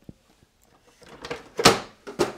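Plastic scanner lid of an Epson WorkForce WF-2960 all-in-one printer swinging down and shutting, with a soft rustle as it comes down and a single thud as it closes about one and a half seconds in.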